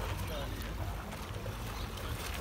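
Dogs swimming and paddling in a shallow river, water sloshing around them, under a steady low rumble of wind on the microphone.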